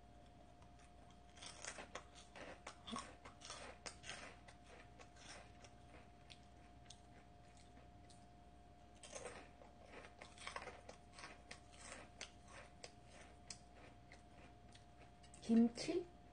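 A crisp snack being bitten and chewed close to the microphone, in two bouts of dense crunching, the first starting about a second and a half in and the second about nine seconds in, with scattered single crunches between.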